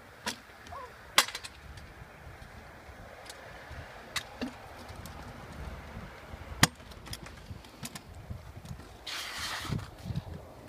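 Stunt scooter rolling on a concrete skatepark with several sharp clacks of the scooter striking the ground, the loudest about a second in and again past the middle. A brief rush of hissing noise comes near the end.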